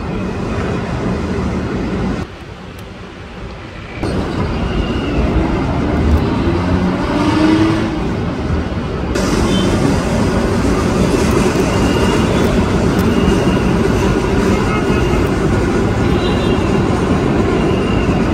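A loud, steady rumbling noise that drops away suddenly about two seconds in and comes back under two seconds later. Faint short high chirps recur in the second half.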